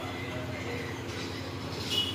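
A steady low background hum with a constant droning tone, with faint voices under it.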